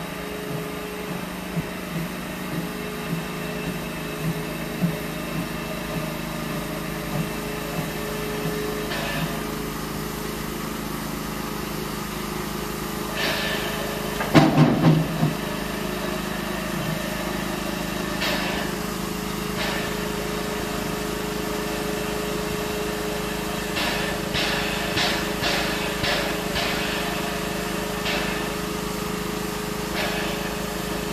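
Narrow-gauge railway snowplough train working slowly along a 750 mm track, pushing snow aside with a steady running sound. Light regular knocks come in the first third, one loud burst about halfway, and several short hissing bursts near the end.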